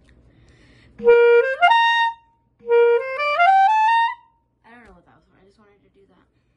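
Clarinet played in two short rising runs: each starts on a held low note and climbs stepwise about an octave, the first quickly and the second more gradually, with a short pause between them.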